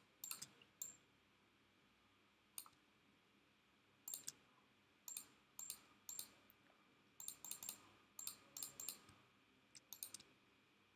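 Faint, irregular computer mouse clicks, often two or three in quick succession, with quiet room tone between them.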